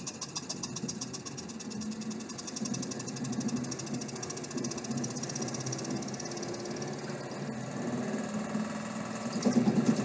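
Cumulative compound DC motor running up as its supply voltage is raised: a fast, even ticking over a steady running hum that slowly grows louder.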